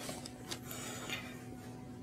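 Faint rustle of clothing and bedding as hands slide under a patient's shorts, with a couple of soft touches and a faint steady hum.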